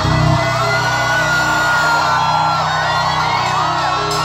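Loud live rock music heard from within a concert crowd. The heavy bass drops out about half a second in, leaving gliding high lines above the mix, and the low end comes back near the end.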